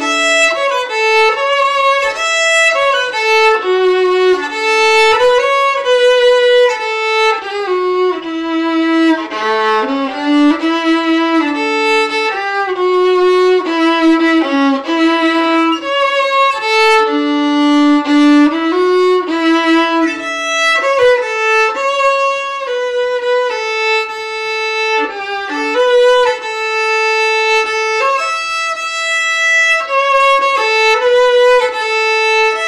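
Solo fiddle playing a waltz in A, a single bowed melody line with some long held notes.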